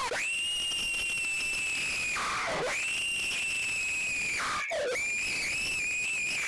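A long, high-pitched shriek held on one note. It sags away and rises back to the same pitch twice, a little over two seconds in and again near four and a half seconds, in the soundtrack of a crude violent cartoon.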